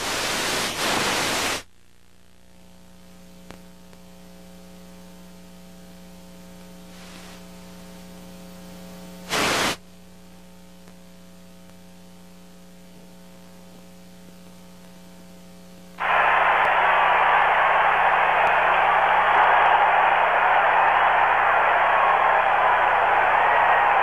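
Dead air on a television broadcast feed knocked out by an earthquake. A burst of static gives way to a low, steady electrical hum, broken by a brief crackle of static about nine seconds in; about two thirds of the way through, loud steady static hiss takes over.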